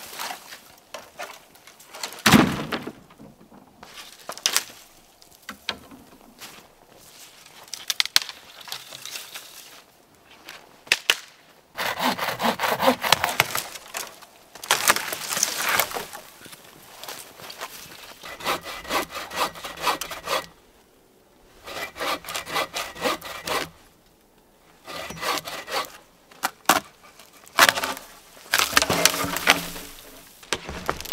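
Hand saw cutting through dead wood in runs of quick back-and-forth strokes lasting a few seconds each, with short pauses between runs. A single sharp crack about two seconds in is the loudest sound.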